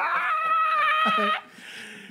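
A long, high-pitched squeal from a person, a single held note for about a second and a half that cuts off sharply, followed by a faint breathy hiss.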